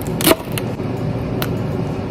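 Two crisp cuts of a chef's knife through celery stalks on a wooden board, the first and louder one just after the start, over a steady whirring noise that cuts off abruptly at the end.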